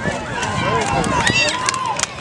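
Several spectators shouting and cheering at once, high, excited voices overlapping, with a few short sharp clicks in the second half.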